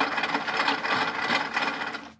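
The prop lie-detector machine running with a fast, steady mechanical rattle, like a small motor-driven mechanism, which stops abruptly at the end.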